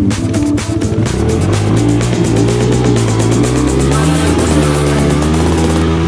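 Background music with a dirt bike engine running beneath it. The engine revs up from about a second and a half in, and its pitch wavers with the throttle.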